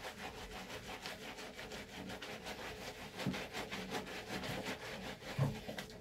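A sponge scrubbing a cat's wet, soapy fur in quick rhythmic rubbing strokes, several a second.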